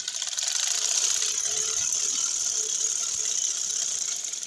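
Sewing machine running at a steady, fast stitching speed as it sews a seam through cotton suit fabric, starting abruptly.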